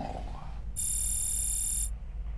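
A shrill electronic tone, switched on sharply a little before the middle and held for about a second before cutting off, over a steady low hum.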